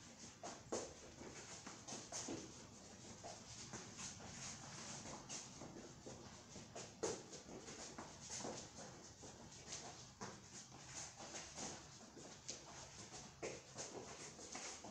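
Soft, quick footfalls and scuffs of sneakers on a padded floor mat during a lateral shuffle footwork drill. The steps are faint and come in an uneven run of light taps.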